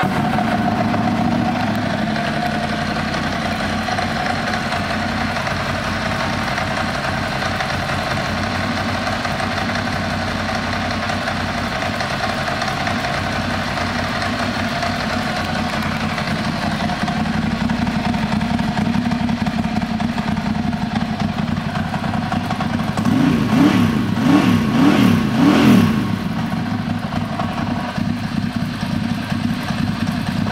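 2009 Ducati Monster 1100's air-cooled L-twin engine, fitted with twin Termignoni exhausts, idling steadily. About three-quarters of the way through, the throttle is blipped three or four times in quick succession, and then the engine settles back to idle.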